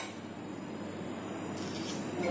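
A single light clink of a metal utensil against glassware at the very start, then only a faint steady hiss.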